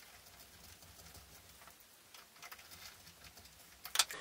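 Faint ticks and scrapes of a hand screwdriver driving screws through a metal hinge into a wooden board, with a sharper click near the end.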